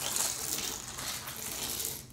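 Small beads and water rattling and swishing inside a clear plastic water bottle as it is handled and shaken: a continuous, busy rattle that eases off near the end.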